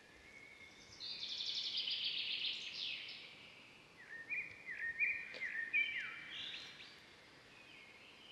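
Quiet birdsong outdoors. A songbird gives a high trill lasting about two seconds, then a run of short chirps, several sliding quickly downward in pitch.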